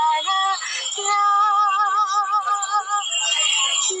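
A woman singing a Hindi film song on her own. She steps through a few short notes, then holds one long note with vibrato for about two seconds, and a new phrase begins near the end.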